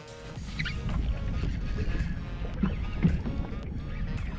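Steady low wind and water noise aboard a small fishing boat at sea, with faint music underneath.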